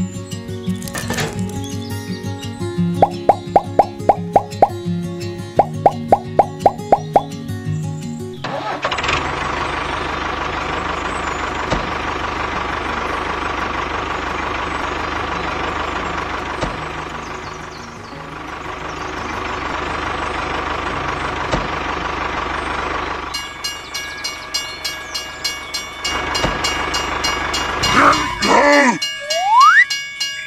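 Background music with a plucked, rhythmic tune, then about eight seconds in a steady mechanical running sound takes over for about fifteen seconds as the DIY mini tractor pulls its loaded trolley across the sand. Near the end more music returns with a rising whistle.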